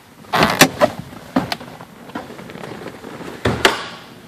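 Scattered knocks and clicks inside a car's cabin. A short rustle comes about half a second in, two sharp clicks follow around a second and a half, and a sharper click-knock comes near the end.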